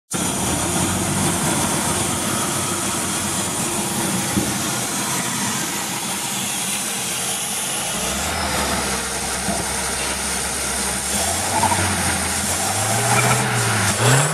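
2013 Ford Escape engine running at idle, a little rough because of a damaged air box. Near the end the engine speed starts to rise and fall.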